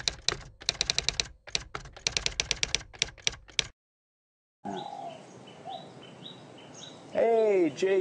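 Typing sound effect: rapid, irregular keystroke clicks for about three and a half seconds, then a short silence. Faint outdoor background with small bird chirps follows, and a man starts speaking near the end.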